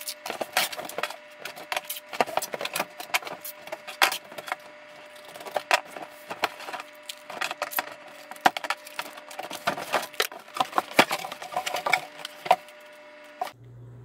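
Clear packing tape being pulled off its roll and pressed onto a cardboard box, with the box being handled: a dense run of sharp clicks, rips and knocks.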